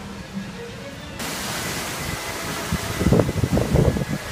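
A steady rushing noise comes in suddenly about a second in, with loud, irregular low thuds near the end, over faint background music.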